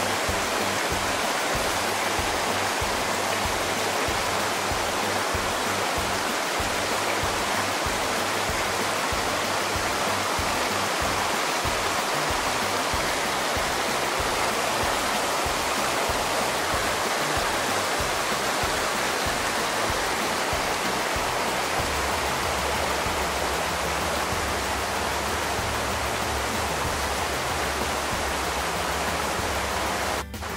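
Mountain creek rushing steadily over rocks and small cascades, with low background music running underneath.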